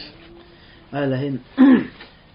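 About a second in, a man clears his throat: a short steady hum, then a quick, louder falling 'ahem'.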